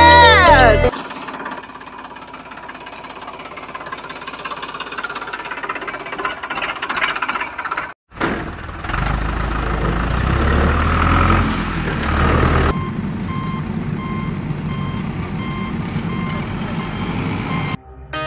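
A low vehicle engine rumble, then a steady engine drone with a regular beeping like a truck's reversing alarm, repeating evenly through the last few seconds. It is most likely an added sound effect for the toy vehicles.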